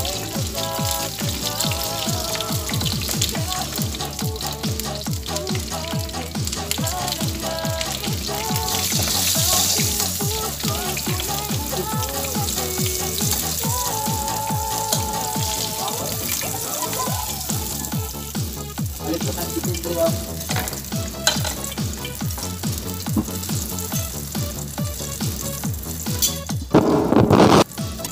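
Hot oil sizzling in a frying pan of fried fish pieces, with background music with a steady beat playing over it; the sizzle grows briefly louder about nine seconds in.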